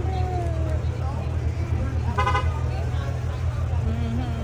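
A car horn gives one short toot about two seconds in, over a steady low rumble and the talk of people standing around.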